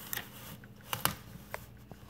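Faint handling noise from a glass bottle being pressed down onto a wrap-around label on a manual label applicator's rollers, with a few light clicks scattered through it.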